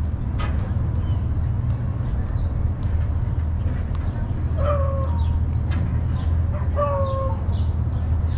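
Small birds chirping in short, high notes throughout, with two louder, lower calls about five and seven seconds in, each slightly falling in pitch, over a steady low rumble.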